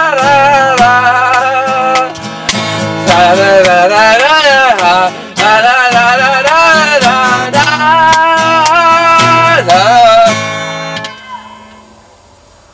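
A boy singing a melody over a strummed acoustic guitar. The singing and strumming stop about ten seconds in, and the sound dies away.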